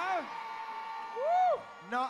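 A voice making a drawn-out exclamation that rises and falls in pitch about a second and a half in, over a faint steady tone.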